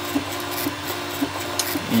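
Diode laser engraver's stepper motors humming as the head scans back and forth across plywood, the tone breaking off and restarting about twice a second at each pass reversal, over a steady fan-like hiss.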